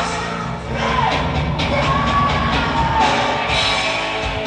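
Heavy metal band playing live, loud and full, with the crowd cheering and yelling over it.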